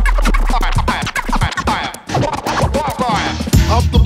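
A hip-hop turntablism track: rapid back-and-forth turntable scratches over a drum beat. A deep bass note is held through the first second and a half, and the music drops out briefly near the middle.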